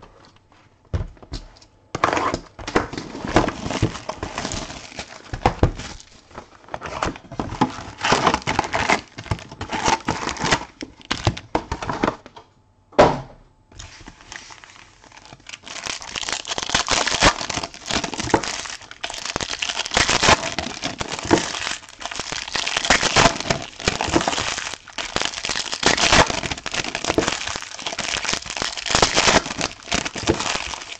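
Hands crinkling and tearing open 2016 Topps Premier Gold trading-card packs, the foil wrappers rustling in irregular bursts, with one sharp snap near the middle and steadier, louder crinkling in the second half.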